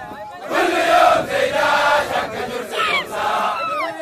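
A large group of men chanting and shouting together, the chant breaking in loudly about half a second in, with a high sliding whoop from one voice near the end.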